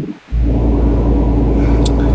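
Steady low hum inside a car's cabin, with a faint steady tone above it, after a brief dip in level about a quarter-second in.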